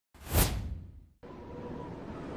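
Whoosh sound effect on an animated logo, swelling quickly and fading within about a second. About a second in, it cuts to a steady rushing background.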